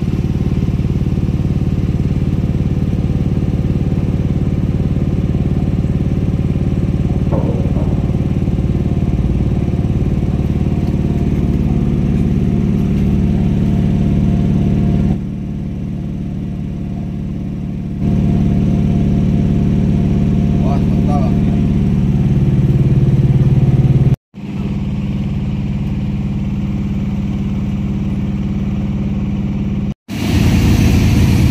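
A machine motor running with a steady, even drone while hydraulic jacks lift a heavy load. The drone drops in level for a few seconds about halfway through and breaks off abruptly for an instant about two-thirds through.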